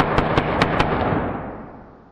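A pyrotechnic propeller-snare round firing from a small multi-barrel rope gun: a fizzing hiss broken by about five sharp cracks in the first second, then dying away.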